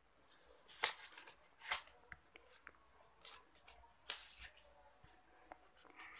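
Paper cards being handled: a few short rustles and soft ticks as a round paper card is taken from a small stack and held up, the loudest rustles about a second in and again near the middle.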